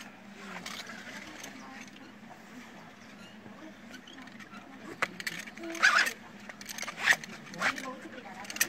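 A lead block weight being threaded onto a nylon weight belt, the webbing sliding through the weight's slots. Several sharp clicks and knocks of the lead weight come in the last few seconds.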